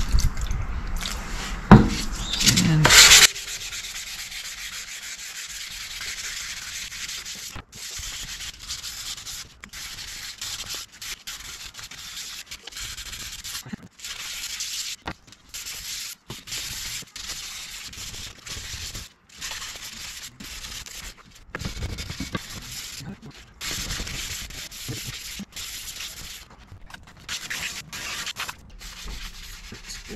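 Wet sanding of an Axis ART carbon hydrofoil wing with 360-grit wet-and-dry sandpaper on a sanding block: a hissy rubbing in repeated back-and-forth strokes with short breaks between them. This is the coarse first stage that strips the factory paint off the wing's surface. In the first three seconds, water is poured on, with a couple of sharp knocks.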